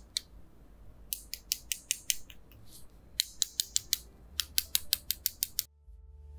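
Paintbrush tapped against another brush handle to flick splatters of watercolor paint: rapid light clicks in three bursts, about six a second, stopping abruptly near the end.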